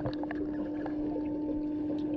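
Muffled underwater ambience: a steady low hum over a faint wash, with a fainter higher tone joining about halfway through.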